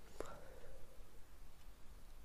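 A pause in speech that is not silent: faint microphone hiss over a steady low hum, with one brief faint sound about a fifth of a second in.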